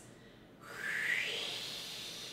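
A woman's forceful breathy exhale through puckered lips, a breath-support warm-up sound: an airy 'wh' that glides up in pitch into a hissing 'hee' and slowly fades. It starts about half a second in.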